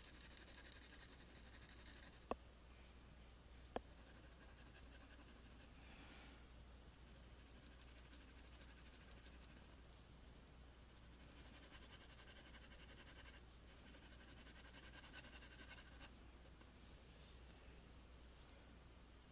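Very faint scratching of a graphite pencil shading on paper, coming and going in strokes, with two short sharp clicks a couple of seconds in.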